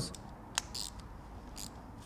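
Faint handling sounds: a few soft clicks and rustles as a small electric motor and its mount are handled and fitted together. The motor is not running.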